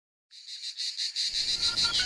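Crickets chirping in a fast, even pulse of high chirps, about eight a second, starting a moment in. A low rumble comes in partway through.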